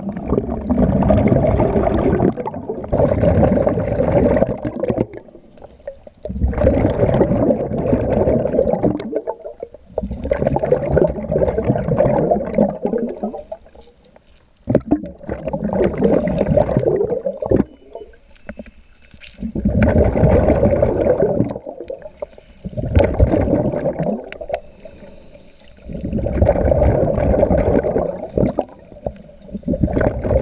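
Scuba regulator exhaust bubbles heard underwater: a bubbling gurgle in bursts of two to three seconds, about every four seconds, with quieter gaps between. This is a diver's steady breathing: each burst is an exhale through the regulator.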